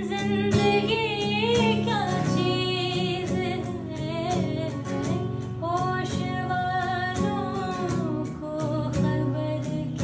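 A woman singing a ghazal in a wavering, ornamented line, accompanied by an acoustic guitar strummed steadily beneath her voice.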